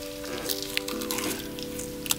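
Close-miked crackling and crunching of crisp roasted seaweed being chewed, a fine crackle with scattered sharp ticks. Soft music with several held notes plays underneath.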